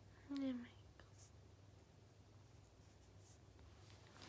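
A short closed-mouth "hm" from a young woman, falling slightly in pitch, about a third of a second in. After it there is near silence with faint room hum and a couple of soft ticks.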